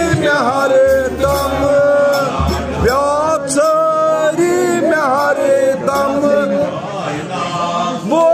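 Devotional song: a man sings a slow melody in long, held notes over instrumental accompaniment. A low bass layer drops out about three seconds in.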